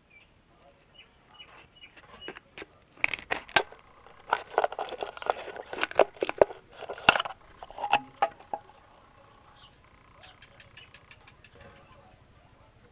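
Scissors cutting through a plastic drink bottle: a quick run of sharp snips and crackling of the thin plastic from about three seconds in, stopping after about eight seconds.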